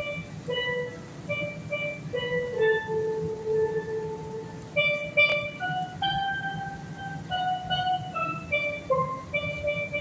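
A steelpan playing a slow melody of long held notes, one note at a time.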